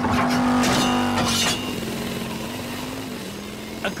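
Cartoon sound effects of a vehicle speeding low over the ground: a steady engine hum with a few whooshes in the first second and a half, fading off over the next couple of seconds.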